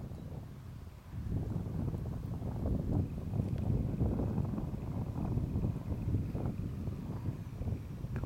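Gusty wind buffeting the microphone, picking up about a second in, with a faint distant light-aircraft engine drone underneath.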